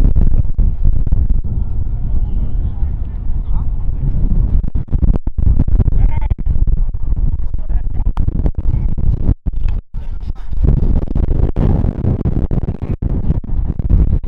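Wind buffeting the camera microphone: a loud, steady low rumble, with faint, indistinct voices underneath. The sound cuts out briefly twice a little past the middle.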